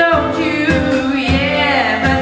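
A live folk-rock band plays a song: a lead voice sings over strummed acoustic guitar, fiddle and a drum kit keeping a steady beat. In the second half the voice holds a long, wavering note.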